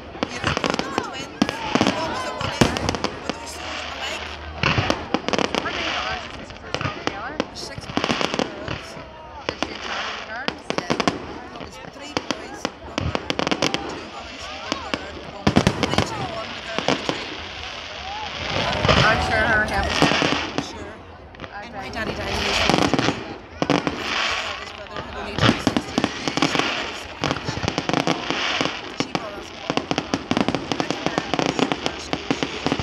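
Aerial fireworks going off in quick succession, a dense string of sharp bangs and crackling bursts, with a crowd of onlookers talking.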